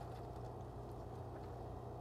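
Steady low hum under a faint even background noise, with no distinct sound standing out.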